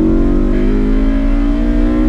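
Honda S2000's four-cylinder VTEC engine accelerating hard under load, heard from inside the cabin. Its pitch climbs steadily high into the rev range.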